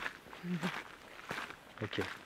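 Footsteps of people walking, faint steps at an easy pace, with a brief voiced murmur about half a second in and a quiet "ok" near the end.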